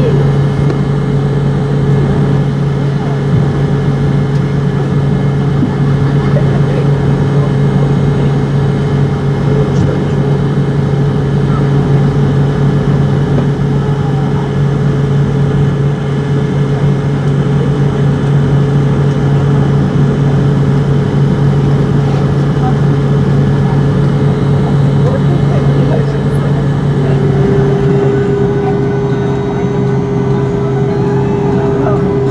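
Fokker 70's rear-mounted Rolls-Royce Tay turbofans running at low taxi power, heard inside the cabin as a steady drone. It holds a low hum with a steadier, higher tone above, and the higher tone firms up slightly near the end.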